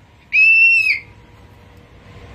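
A single short, high-pitched whistle-like tone lasting about half a second, steady in pitch and dipping as it stops.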